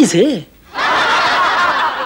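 A short spoken word, then from under a second in a studio audience laughing together for about a second and a half.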